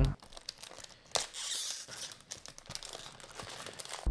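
A small packaging bag being torn open and crinkled by hand, with a series of small crackles and a louder tear about a second in.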